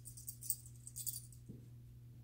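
Metal tags and hardware on a dog's collar jingling in a few short shakes as the collar is handled, through the first second or so, followed by a soft thump.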